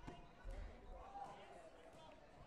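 Faint thuds of a taekwondo sparring bout, kicks and footwork landing on the mat and body protectors, a sharp one at the start and a heavier one about half a second in, under faint distant voices in a large hall.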